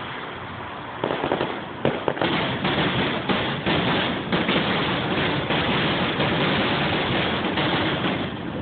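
Fireworks finale: a rapid barrage of aerial shell bursts begins about a second in, the bangs following one another so closely that they run together into a continuous din, heard through a phone's microphone.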